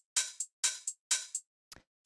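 Programmed lo-fi house hi-hats playing a sampled pattern: three crisp hits about half a second apart, each a short hiss that fades quickly, with a faint tick near the end. The hats are EQ'd to a band with a small high-end bump and no low end, for a lo-fi sound.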